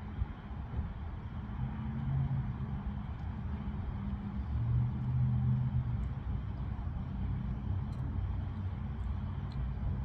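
A motor vehicle's engine running with a low, steady rumble, swelling twice, about two and five seconds in.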